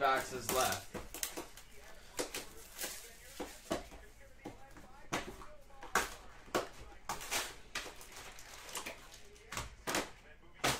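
Hands tearing open a sealed Panini Prizm hobby card box and pulling out its foil packs: a run of irregular crinkling, tearing and light knocks of cardboard and packs.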